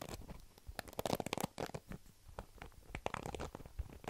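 Fingers raking across the plastic bristles of a paddle hairbrush held close to the microphone: rapid scratchy clicking in several short bursts.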